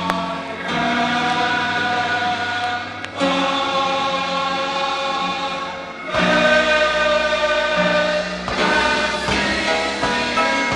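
Gospel choir singing long held chords that change about every three seconds, with a deeper bass filling in about six seconds in.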